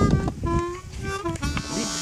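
Harmonica playing a blues line, with short held notes, some of them bent in pitch.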